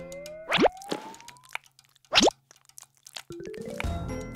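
Cartoon sound effects: a slow rising whistle-like glide, and two quick upward-swooping plops about a second and a half apart, between stretches of light background music.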